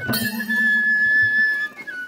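A single high whistled or piped note held steady for about a second and a half, with a low steady drone underneath.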